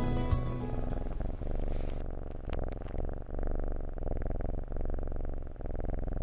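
Kitten purring steadily, swelling and dipping with each breath, heard close. Background music fades out about two seconds in.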